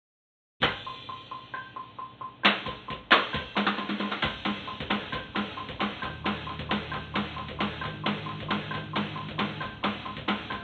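Electronic drum kit played in a steady, driving rhythm of snare and kick hits, starting abruptly just under a second in.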